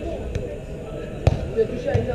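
A football being kicked and passed on artificial turf: three sharp thuds, the loudest a little past the middle, over players calling in the background.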